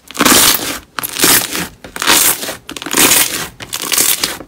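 Slime squeezed and kneaded by hand, crackling and squishing in loud bursts about a second apart.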